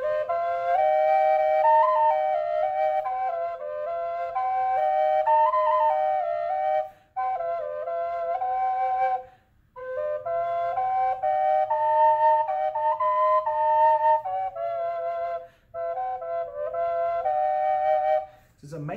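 Small high-pitched Native American drone flute played, a melody moving over a held drone note so that two tones sound at once. It goes in several phrases broken by short breaths.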